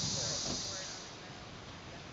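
A steady, high-pitched insect chorus that fades out about a second in, with faint voices underneath.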